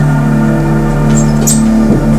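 Steady, loud low droning hum made of several held tones, with a couple of brief high hisses a little past a second in.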